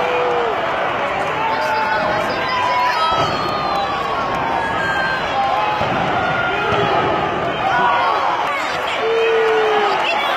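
Arena crowd of many voices shouting and chanting at once, a steady din. Near the end one voice rises above it with a long shout that falls slightly in pitch.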